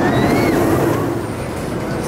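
Rocky Mountain Construction hybrid roller coaster train rumbling along its steel track as it passes, with riders screaming over the rumble near the start.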